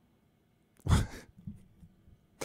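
A man's sharp sighing breath out into a close microphone, about a second in, followed by a couple of faint breaths.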